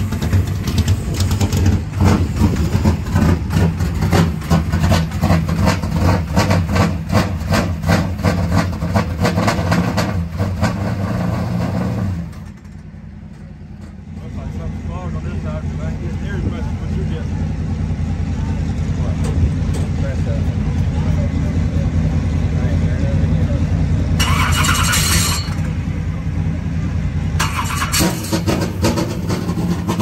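Late model race car's V8 engine running with an uneven, pulsing beat, then cutting out about twelve seconds in. After a short lull an engine runs steadily again, with two short hissing bursts near the end.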